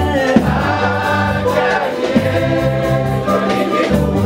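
A choir singing a gospel hymn over a steady bass line, with occasional drum hits.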